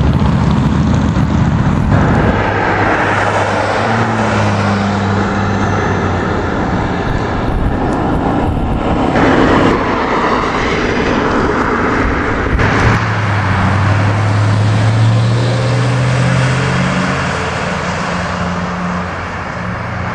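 Road traffic passing close by: cars going past one after another, their engine hum and tyre noise swelling and fading over a steady roar. The sound changes abruptly a few times where the footage is cut.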